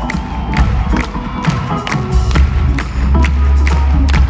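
Live rock band playing in an arena, heard from among the audience, with a heavy bass and a steady drum beat. The crowd cheers over the music.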